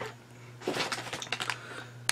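A chip bag crinkling as it is picked up and handled, a run of irregular crackles starting under a second in.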